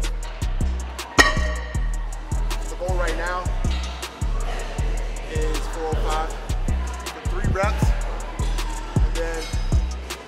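Background music: a beat with deep bass hits and drum strikes about twice a second, with a vocal line wavering over it.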